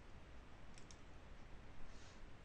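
Two faint computer mouse clicks just under a second in, over low steady room hiss.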